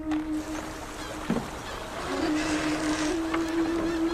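Background music holds a low sustained note that breaks off about a second in and comes back halfway through, over water moving at a riverbank. Short high chirps come in near the end.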